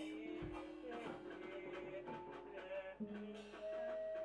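A small band playing a quiet instrumental passage: short plucked notes with light drum hits, and a held note that comes in near the end.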